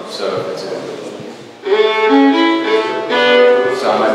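A solo fiddle plays a short phrase of several bowed notes. It starts suddenly about halfway in, after some talk.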